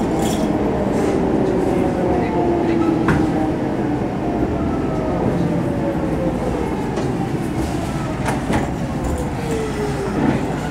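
Kintetsu 6413 series electric train heard from inside the car, its motor whine falling steadily in pitch as it slows into a station, over the running noise of the wheels. A few sharp clicks from the wheels crossing rail joints come about three seconds in and again near the end.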